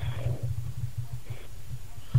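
A low, uneven, pulsing hum in a pause between speakers, with two faint traces of voice or breath about a quarter-second and a second and a half in.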